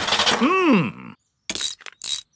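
Cartoon sound effect of a small car engine failing to start: a noisy sputter ending in a rising-then-falling wheeze that cuts out about a second in. A few quick metallic clinks of a spanner on the engine follow near the end.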